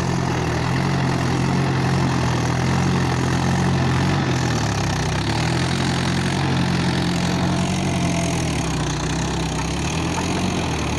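A 45 HP tractor's diesel engine running steadily at working revs, its note dipping briefly twice.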